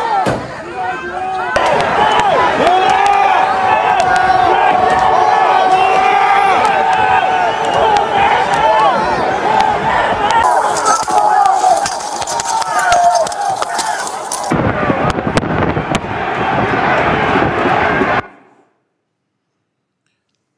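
A crowd of rioters shouting and yelling in a close-quarters clash with police, with scattered sharp knocks and bangs. A high hiss runs for a few seconds in the middle, and the sound cuts off abruptly near the end.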